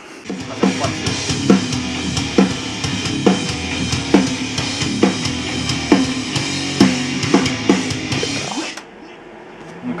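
Drum kit playing a steady heavy-metal beat, with a strong accented hit about once a second over constant cymbals. It cuts off suddenly near the end.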